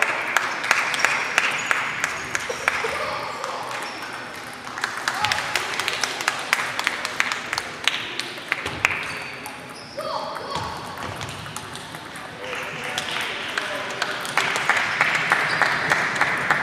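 Table tennis balls clicking off bats and tables at several tables at once: a rapid, irregular run of sharp clicks that comes in clusters. Under it is a murmur of voices in a large sports hall.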